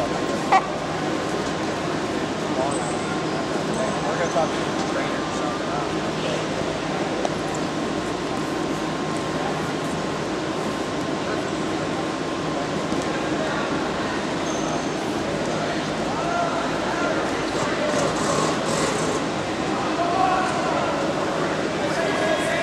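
Indistinct background chatter of several people over a steady hum, with one sharp knock about half a second in.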